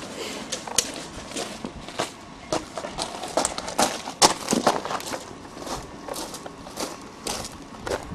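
Footsteps of someone walking with a handheld camera, heard as a string of uneven crunches and knocks about half a second apart, mixed with scuffs from handling the camera.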